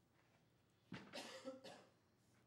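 A person coughing faintly: a short cluster of coughs about a second in, in an otherwise quiet room.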